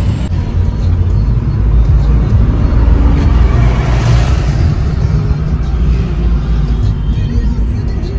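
Car driving in slow traffic, heard from inside the cabin: a loud, steady low rumble of road and engine noise that swells about halfway through as a truck passes close alongside.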